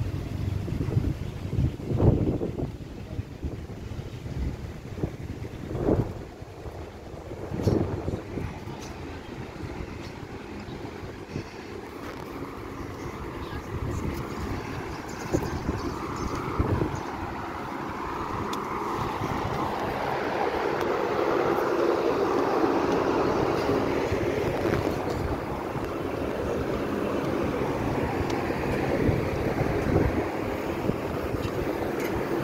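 Wind buffeting a phone microphone outdoors, with a few loud bumps in the first few seconds; from about halfway a steady background murmur grows louder.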